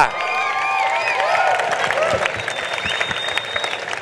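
Audience applauding steadily to welcome a person onto a stage.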